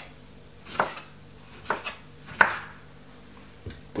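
Chef's knife cutting the peel from a lemon on a wooden chopping board: four separate knocks of the blade hitting the board, the loudest a little past halfway.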